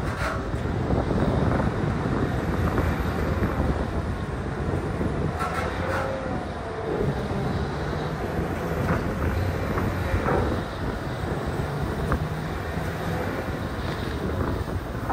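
Large Caterpillar wheel loader's diesel engine working steadily under load while its long lever attachment pries at a marble block, with a few knocks and scrapes of stone and steel, and a brief rising-then-falling whine about six seconds in.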